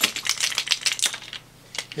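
Quick run of small clicks and rattles as a plastic drill bit sharpener is taken apart and its loose nut and washer come out, lasting about a second and a half, with a single click near the end.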